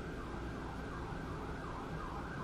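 Faint emergency-vehicle siren, its pitch sweeping up and down in quick repeated cycles.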